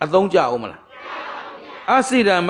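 A man's voice preaching for under a second. Then comes about a second of a quieter, many-voiced murmur, like a listening audience responding together, before he speaks again.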